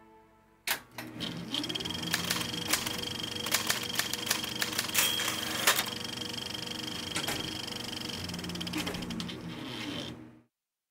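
Typewriter keys clacking in an irregular run of strikes, starting about a second in, over a soft sustained musical tone.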